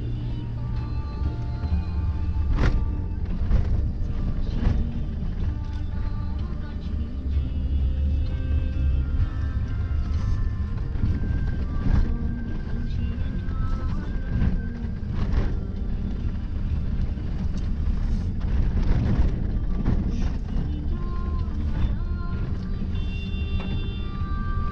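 A vehicle driving a rough dirt road, heard from inside as a steady low rumble with occasional knocks and jolts from the bumps. Music with singing plays over it.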